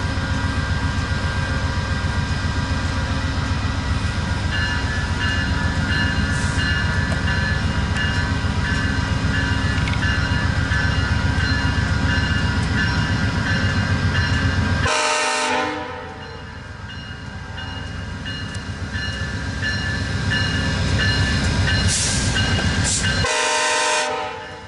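VIA Rail GE P42DC diesel locomotive running with a steady, loud low rumble as the passenger train moves through. The rumble breaks off briefly about fifteen seconds in and again near the end, each time under a short, sharper sound.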